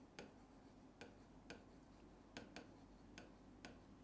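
Faint, irregular clicks of a marker tip striking a whiteboard while a word is written, about seven taps over low room hum.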